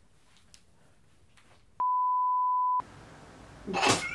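Faint room tone, then a steady electronic beep at a single pitch lasting about a second, inserted in the edit with the sound cut to dead silence around it, the kind of bleep used to censor or mark a cut. A short loud noise comes right at the end.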